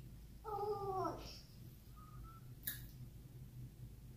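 A toddler's short high-pitched vocal sound, falling slightly in pitch, about half a second in and lasting under a second. A faint click follows near three seconds.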